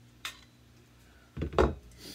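Handling noises from a homemade aluminium and brass pneumatic rifle: a light metallic click, then about a second and a half in a louder, duller knock as the aluminium barrel is set down on the bench mat.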